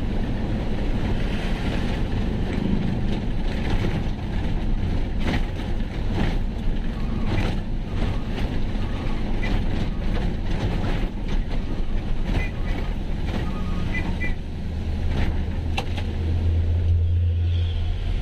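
A truck's diesel engine running under way, heard from inside the cab, with road noise and small cab rattles and clicks. A deeper low hum swells near the end.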